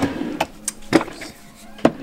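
Rummaging in an open desk drawer full of cables and small electronics: a few sharp knocks and clatters as items and the drawer are handled, the loudest about a second in and just before the end.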